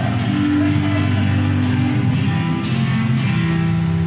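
Rondalla ensemble of ukuleles playing an instrumental gospel chorus tune, strummed chords over a moving line of low bass notes.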